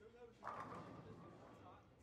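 Bowling ball striking the pins at the end of the lane: a sudden faint clatter about half a second in that dies away over the next second, with voices murmuring in the background.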